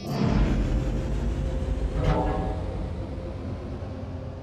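A deep, steady rumble from a submarine sound effect, starting suddenly and swelling briefly about two seconds in.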